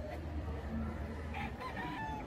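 Rooster crowing, starting about one and a half seconds in, over a steady low hum.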